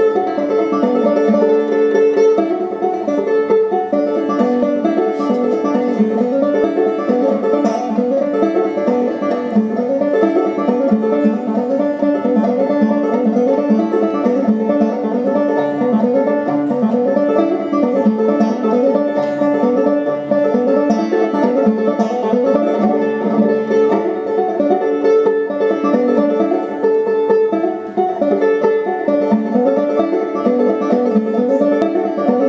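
Solo banjo playing an old-time tune, a steady run of plucked notes with no pause.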